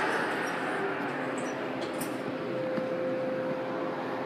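Montgomery KONE hydraulic elevator heard from inside the cab as it travels up: a steady hum and rush of the pump and the moving car, with a faint steady tone coming in partway through.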